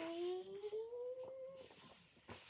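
A girl's voice holding one long wordless note that slowly rises in pitch and breaks off near the end.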